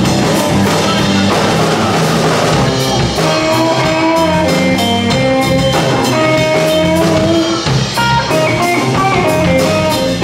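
Live blues-rock band playing an instrumental passage on electric guitars, bass guitar and drum kit. A lead guitar line of held, stepping notes sounds over a steady drum beat.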